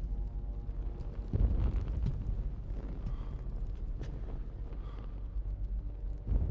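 Film sound design: a deep, steady low rumble that swells louder about a second and a half in, with a few soft knocks and faint music fading out in the first second.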